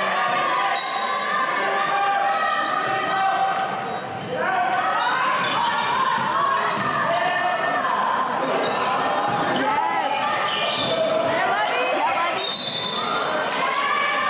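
Sound of a basketball game in play in a large gymnasium: a basketball dribbled on the hardwood court under the overlapping voices of players, coaches and spectators calling out, all echoing in the hall.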